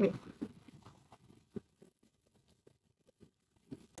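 Saltine crackers shifting inside a plastic zip-top bag as it is turned and shaken to coat them in seasoned oil: faint scattered rustles and light clicks, mostly in the first two seconds.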